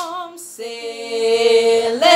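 Female and child voices singing a song together, settling into one long held note about half a second in.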